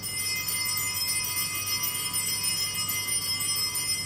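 Altar bells rung at the elevation of the chalice, marking the consecration. The bright ringing of several high tones starts suddenly, holds steady, then dies away near the end.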